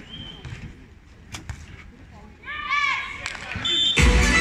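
Quiet stadium lull between rallies of a beach volleyball match. There are a couple of sharp knocks about a second and a half in, a short call that rises and falls in pitch near three seconds, and a brief high steady tone just before the end.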